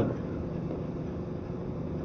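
Steady hum and hiss of an old broadcast recording's background noise, with no speech.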